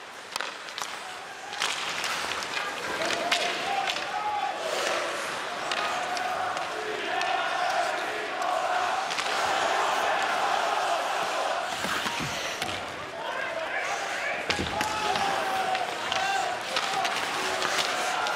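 Arena sound of a live ice hockey game: a steady din of crowd voices, broken by sharp clacks of sticks and puck and a couple of heavier thuds against the boards.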